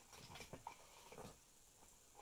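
Near silence: room tone, with a few faint soft sounds in the first second or so.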